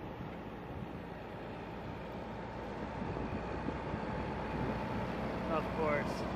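Distant AH-64 Apache attack helicopter flying by: a steady rotor and turbine drone mixed with wind noise, slowly growing louder.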